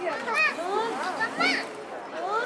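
Young children's voices chattering and calling out, high-pitched, with two louder rising-and-falling calls, one about half a second in and one about a second and a half in.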